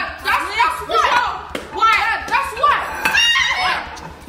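Several excited voices shouting and cheering over one another, too overlapped to make out words.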